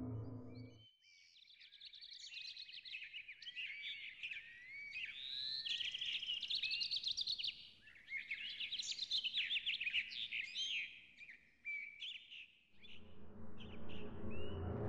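Songbird singing in bursts of quick rising and falling chirps and rapid trills, with a short pause about 8 seconds in, fading out about 11 seconds in. Background music fades out at the start and comes back in near the end.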